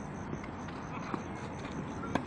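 Steady outdoor background noise at a floodlit clay tennis court, with a few soft, scattered knocks such as a distant ball bounce or footsteps on clay.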